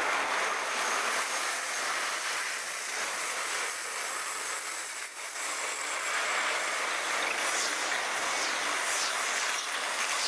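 Freight cars (tank cars and covered hoppers) rolling past, a steady noise of steel wheels on the rails, with faint high wheel squeals near the end.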